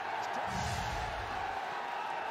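Steady stadium crowd noise, with a low rumble for about a second in the middle.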